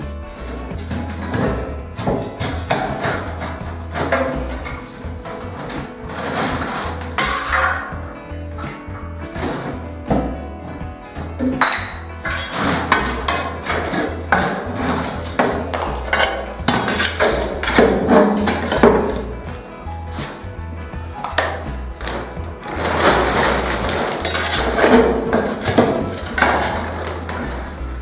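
Background music over repeated clinks, knocks and scrapes of a metal hand tool against stones and rubble being dug out of a blocked shaft.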